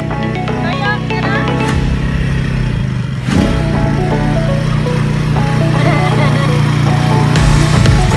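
Background music, with the engine of an ATV (quad bike) running underneath as it drives across grass toward the camera.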